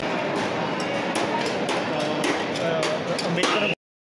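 Crowd chatter with repeated clinks and clatter of stainless-steel thali plates and tumblers; the sound cuts out suddenly near the end.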